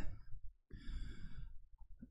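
A man breathing audibly into a close microphone during a pause in his talk: one soft breath lasting under a second, about midway through.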